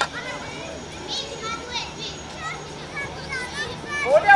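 Young children calling out and chattering during play, short high-pitched shouts scattered through.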